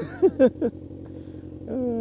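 Motorcycle engine idling at a standstill, a low steady hum, with a man laughing over it for the first half-second.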